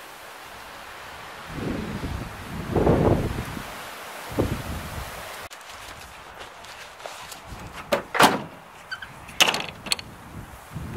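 A canvas gear bag rustles and thumps as it is picked up and slung on, then the back of a pickup truck is shut with two loud bangs about a second apart near the end: the tailgate and the camper-shell window slamming closed.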